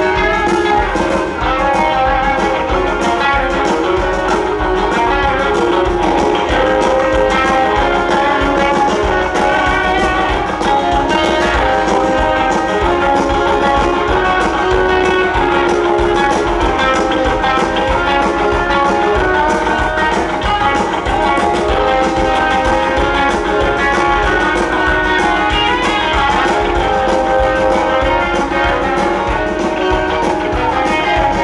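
A live band playing an instrumental jam, with guitar to the fore over bass and drums, at a steady loud level.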